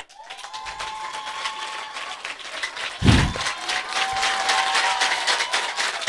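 Audience applauding: many hands clapping fast and irregularly, with a faint steady high tone held through it and a low thump about three seconds in.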